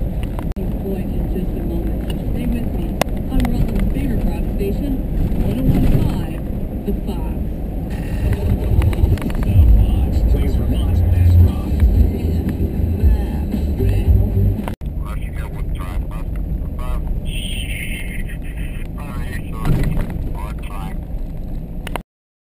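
Road noise inside a vehicle driving a gravel road: a steady low rumble of engine and tyres, heaviest from about nine to fourteen seconds in, with a brief dropout just before fifteen seconds.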